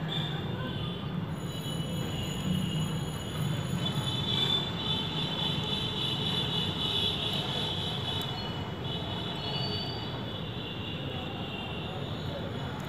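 Steady background hum with a high-pitched whine running through it, from an unseen machine or from traffic. Knitting-needle clicks are not clearly heard.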